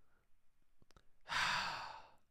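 A man's audible breath close to the microphone: one long, noisy, sigh-like breath starting about a second and a half in, preceded by a couple of faint mouth clicks.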